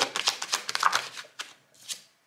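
Tarot cards being shuffled through by hand: a quick run of papery card flicks, then a brief swish of a card sliding just before the end.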